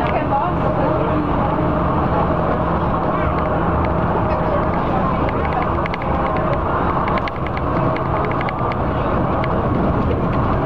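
Neoplan AN440 diesel transit bus heard from inside the cabin at freeway speed: a steady engine drone and road noise, with faint light clicks through the middle.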